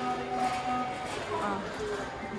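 Speech only: a woman's voice holding one long, level hesitation sound for about the first second, then a brief bit of voice, over the background noise of a large store.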